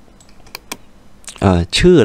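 Two sharp computer mouse clicks close together, on the output's scroll bar, in near quiet before a man starts speaking.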